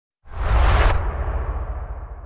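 Logo-reveal whoosh sound effect with a deep low end. It starts a quarter second in, its high hiss cuts off sharply just under a second in, and the rest fades away slowly.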